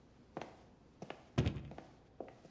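Footsteps on a hard polished stone floor, a few separate steps about half a second apart, with one louder, deeper thump about one and a half seconds in.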